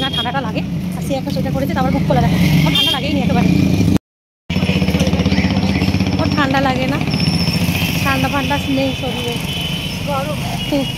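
A motor vehicle engine running steadily close by, a low rumble under women's chatter. The sound cuts out completely for about half a second near the middle.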